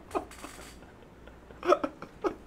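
People laughing in short, hiccup-like bursts: one quick laugh just after the start, a faint breath, then two quick laughs near the end.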